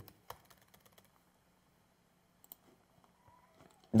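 A few scattered, faint clicks and taps of a computer keyboard and mouse, over a faint steady low hum.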